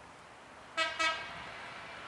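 Two short honks of a vehicle horn, about a quarter of a second apart, over faint steady outdoor background noise.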